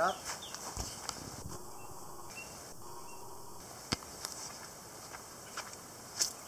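Footsteps on wood-chip mulch while walking, with light rustling and scattered soft clicks over a steady outdoor background, and one sharp click about four seconds in.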